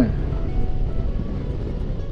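Suzuki V-Strom 250 parallel-twin motorcycle cruising at steady speed, heard from the rider's position as an even low rumble of engine and wind noise.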